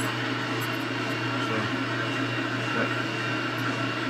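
A machine's steady hum with a constant low drone, running without change.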